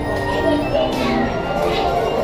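Carousel music playing, with the voices of riders and children chattering over it.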